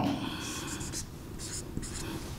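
Whiteboard marker drawing on a whiteboard, a few short scratchy strokes as a waveform is sketched.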